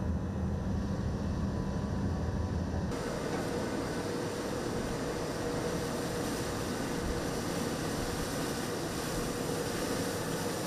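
A low, steady rumble of a boat's engine for about the first three seconds, then an abrupt change to the steady noise of drilling rig machinery on deck, a wide hiss with a constant hum running through it.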